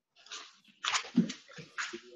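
A pet dog making several short sounds, mostly in the second half.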